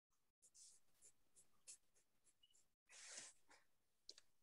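Faint pencil strokes on paper while sketching a cube: a run of short scratchy strokes, with one longer, louder stroke about three seconds in.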